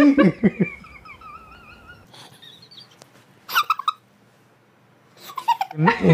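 A man and a woman laughing, the laughter trailing off within the first half second. A faint wavering high-pitched sound follows for about a second and a half. A short burst of laughter comes about three and a half seconds in, then a brief near-silent pause before the voices return at the end.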